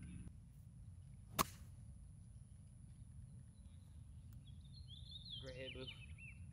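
Golf iron striking the ball once: a single sharp click about a second and a half in, over a low steady wind rumble.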